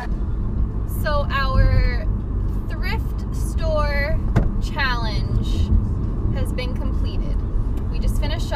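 Steady low road and engine rumble inside a moving car's cabin, with women's voices calling out in several short bursts that slide up and down in pitch.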